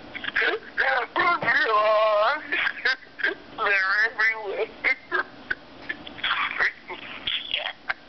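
A voicemail message playing through a flip phone's speaker: a voice making drawn-out, wavering vocal sounds without clear words, twice held for about a second.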